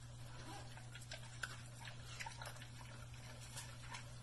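An American bully eating raw meat from a stainless steel bowl: faint wet chewing and smacking with scattered short clicks, over a steady low hum.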